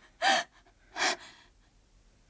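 A distressed woman gasping as she sobs: two short, sharp, breathy intakes of breath about a second apart.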